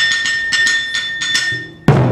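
Taiko drum ensemble playing: quick, sharp stick strikes, about six or seven a second, over a steady high ringing tone. This dies down briefly, and near the end a loud burst of deep hits on the large drums comes in.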